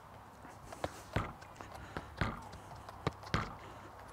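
Football kicked against a low panelled wall and played back off the foot on artificial turf: a string of short, sharp knocks, about two a second and slightly uneven, from the foot touches and the ball striking the boards.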